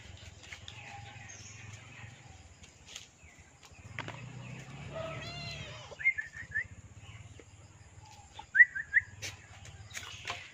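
Bird chirps in quick short runs: four about six seconds in and a louder three near nine seconds. Just before the first run comes a brief rising-and-falling animal cry.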